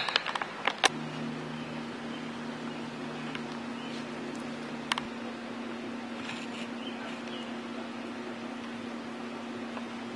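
A few sharp handling clicks in the first second, then a steady low mechanical hum, with a lower second tone that drops out about halfway through and one more click there.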